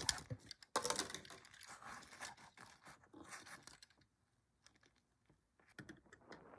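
Plastic blister packaging crinkling and clicking as a correction tape dispenser is pulled out of it, with one sharp snap of plastic about a second in. The handling stops about four seconds in, and a few light clicks of the dispenser follow near the end.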